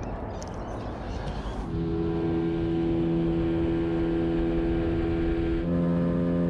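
Mercury outboard motor running at a steady planing speed, with water rushing past the hull. It comes in about two seconds in after a short rushing noise, and its pitch steps up slightly near the end.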